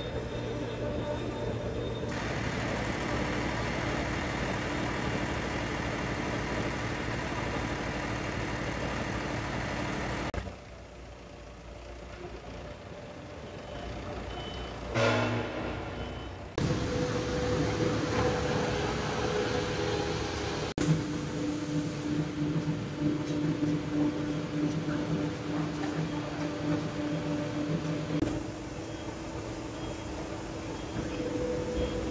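Foundry machinery running with a steady hum, first at a degassing rotor turning in a ladle of molten aluminium. From a little past the middle, a forklift engine runs as it carries the ladle, with a repeating warning beep.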